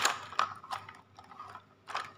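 Hard plastic toys clicking and knocking together as a toy fire truck settles onto a plastic toy car-carrier trailer: one sharp knock at the start, then a few lighter clicks.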